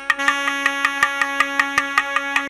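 Carnatic music played on saxophones: a steady held note over evenly paced hand-drum strokes, about five a second.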